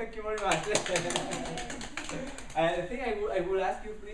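People's voices in a small room, with a quick run of sharp clicks or taps in the first half.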